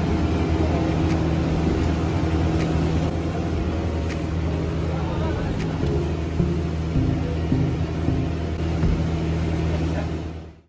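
A passenger boat's engine running at speed: a steady low drone under the rush of water from the wake and wind.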